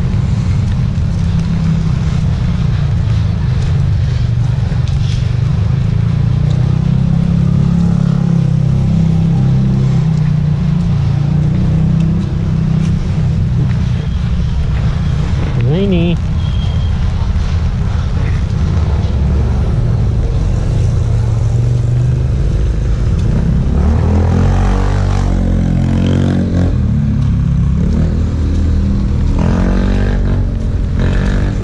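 Street traffic noise with a steady heavy low rumble; a motor vehicle engine grows louder in the last several seconds.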